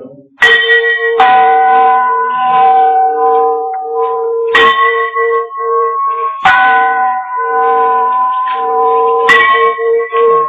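Bell-like chimes struck about five times a second or more apart. Each strike rings on in long held notes of changing pitch over a steady, pulsing lower tone, like a slow bell melody.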